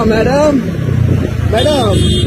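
A voice calling out in rising and falling, sing-song phrases near the start and again near the end, over the steady low hum of a motor scooter's engine running.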